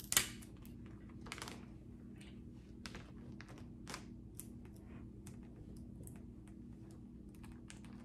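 Wrapping paper being folded and pressed by hand, giving irregular sharp crinkles and taps, the loudest right at the start, over a faint steady low hum.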